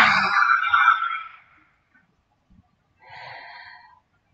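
A woman's forceful lion's-breath exhale (yoga Lion Pose), a loud breathy 'haaa' pushed out with the mouth wide open and tongue out, fading away about a second and a half in. A softer breathy sound follows near the end.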